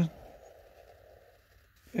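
Faint rubbing of a felt-tip permanent marker drawn along paper for about a second and a half, with a man's voice just before and again near the end.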